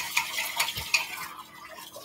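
Dishes and utensils clinking and knocking in a kitchen sink as a bowl is rinsed out: a run of light sharp clicks in the first second, sparser and quieter after.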